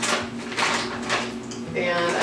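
Vinyl contact paper rustling and crinkling as it is handled and unrolled, in a few short rustles over a steady low hum.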